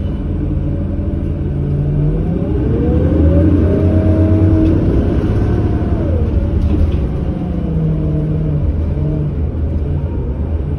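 Cummins Westport ISL G natural-gas engine and Allison B400R automatic transmission of a 2008 New Flyer C40LF bus accelerating, heard from inside the cabin. There is a low rumble with a whine that rises in pitch, then drops back about two-thirds of the way in.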